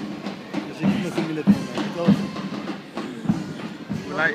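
Ottoman mehter band music with a drum beating a steady march beat, a little under two beats a second, under wavering melodic lines.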